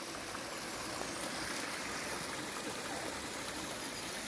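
Steady rush of running water from a stream in a wooded gorge, even and unbroken.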